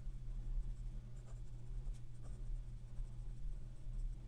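An Aurora Optima fountain pen with a 14-karat gold nib writing on paper, the nib scratching faintly in short strokes. A steady low hum runs underneath.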